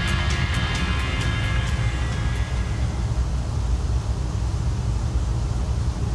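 Background music fading out over the first couple of seconds, leaving a steady low rumble aboard a ferry underway at sea.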